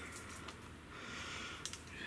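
Faint rustling with a few small sharp cracks: footsteps through leaf litter and twigs on the forest floor.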